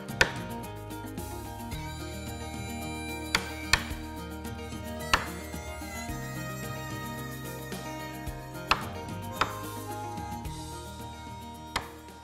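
Wooden mallet striking a wood chisel as it cuts into a wooden board: sharp knocks at uneven intervals, about seven in all, over background music.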